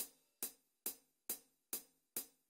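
A drum track's hi-hat playing back on its own, quiet and dry: one short hit on each beat at about 138 BPM, just over two a second, after a brighter, longer cymbal hit dies away at the start.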